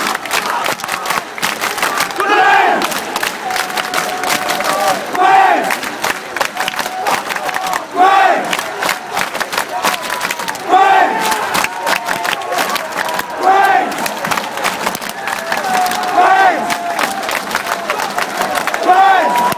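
Football supporters chanting a short phrase in unison, the chant repeating about every three seconds, with hand clapping throughout, celebrating their team's win.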